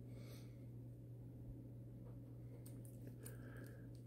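Near silence: a low, steady hum of room tone, with a few faint clicks about half a second in and again near three seconds in from the small metal-cased filter being handled in gloved fingers.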